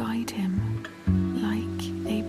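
Gentle lullaby music with sustained low notes under a soft narrating voice.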